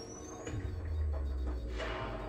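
Cinematic music-video soundtrack: a deep bass rumble comes in about half a second in and holds, under a thin rising whistle that fades early and a brief whoosh near the end.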